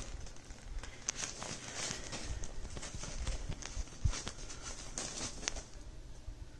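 Kitten scrambling over a shiny fabric cat tunnel: the fabric rustles, with scattered sharp clicks of claws on the material and a soft thump about four seconds in.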